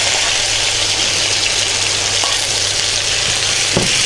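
Sliced onions sizzling in hot oil in a non-stick pan, a steady frying hiss, with a spatula stirring them and a light knock or two near the end.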